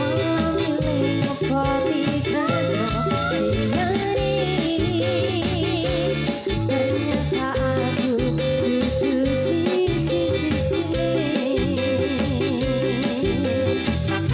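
Live band playing through a PA sound system: a singer holding wavering notes over electric guitar, keyboard, bass guitar and drums, with a steady beat.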